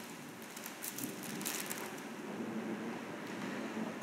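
Faint room noise with scattered light clicks and rustling.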